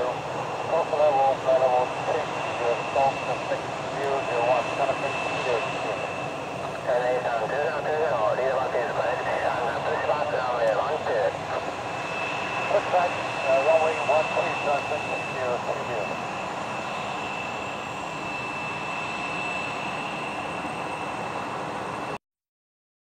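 Turbofan engines of a Fuji Dream Airlines Embraer regional jet whining steadily at taxi power. The high whine weakens in the middle and swells again.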